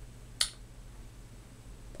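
A single short, sharp click about half a second in, over a faint steady low hum.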